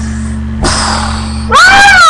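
A loud, high-pitched squealing cry from a voice, rising then falling in pitch over about two-thirds of a second near the end. It sits over a steady electrical hum, with a brief breathy hiss just before it.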